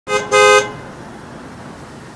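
Car horn honked twice, a short toot then a longer one, to summon the watchman; the horn sounds two steady notes together.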